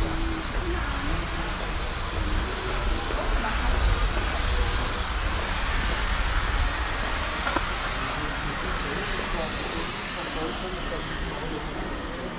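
Outdoor town ambience: indistinct voices of passers-by and café guests over a steady low rumble, swelling slightly midway and easing toward the end.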